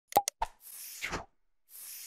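Title-animation sound effects: three quick pops within the first half second, then two airy whooshes as the text slides in.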